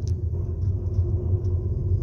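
Steady low rumble of a car driving slowly along a street, heard from inside the cabin: engine and tyre noise with no sharp events.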